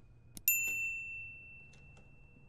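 Elevator chime: a soft click, then one bright ding about half a second in that rings and fades away over a second or two.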